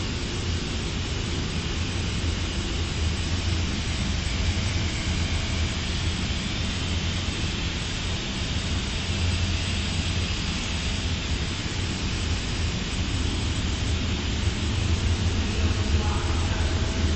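Fine copper wire annealing and tinning machine running: a steady low hum with an even hiss over it.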